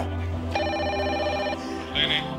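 A telephone ringing: one ring of about a second, starting about half a second in, with the fast fluttering tone of a ringing bell, over steady background music.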